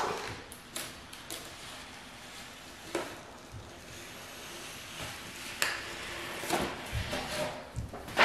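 Quiet rustling and faint scraping of a ruler pushed across adhesive laminate, smoothing it onto sticker paper as the backing sheet is peeled away, with a few light taps.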